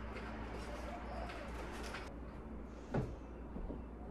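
Horizontal window blinds being raised by hand, the slats rattling and rustling several times over the first two seconds, then a single thump about three seconds in.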